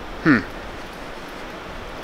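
A man's short 'hmm' falling in pitch, then a steady low hiss of background noise.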